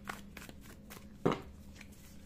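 A tarot deck being shuffled by hand: short rustles and clicks of the card edges, with one louder clap of the cards a little over a second in.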